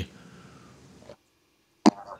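A pause in a man's speech over a video call: a faint hiss that cuts off suddenly to silence, then a sharp mouth click near the end as he gets ready to speak again.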